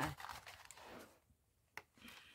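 Boxed doll being handled: a soft rustle of its cardboard and plastic packaging for about a second, and a single small click near the end.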